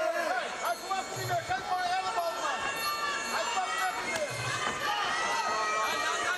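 Traditional Muay Thai ring music: a wavering, bending melody on the Thai oboe (pi java), with a low drum beat about every three seconds and small cymbals over a crowd's murmur.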